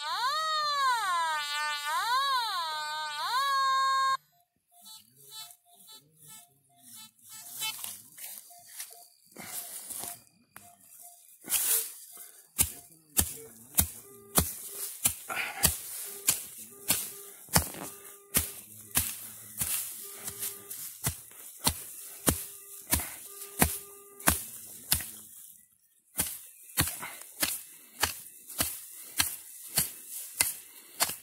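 Metal detector (Nokta Simplex) sounding on a target: a warbling electronic tone that rises and falls for the first four seconds, then scattered short beeps. From about twelve seconds, a regular run of sharp strikes, roughly three every two seconds, as the ground is dug into with a hand tool, with short detector beeps between them.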